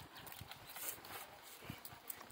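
Faint, irregular knocks and scuffs of bare hands and feet gripping and pushing against a coconut palm trunk while climbing, with brief rustles.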